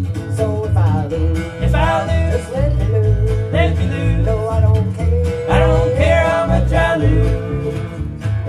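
Live bluegrass band playing an instrumental passage between sung lines: acoustic guitar, mandolin and fiddle over a steady electric bass line, with sliding melody phrases of about a second each.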